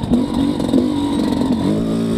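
Yamaha YZ250X 250cc single-cylinder two-stroke engine pulling steadily at low rpm in second gear up a slope, fed by an XTNG GEN3+ 38 metering-rod carburettor. Its pitch drops a little near the end.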